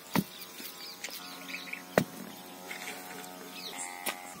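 Two sharp slaps about two seconds apart as wet cow dung is patted between the hands, with birds chirping in the background.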